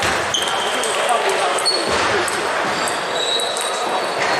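Table tennis balls clicking off bats and tables in an echoing sports hall with several matches in play, scattered short clicks over a steady background of people talking.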